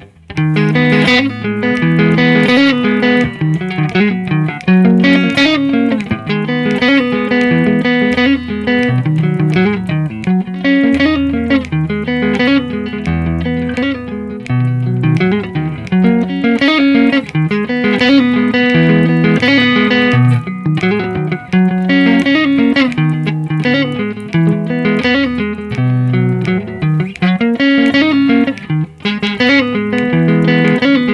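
Squier Stratocaster electric guitar played at a steady tempo of 85, a continuous stream of picked notes without a break.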